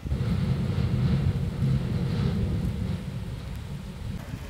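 A low rumble that starts suddenly and is loudest in the first two seconds, then eases a little.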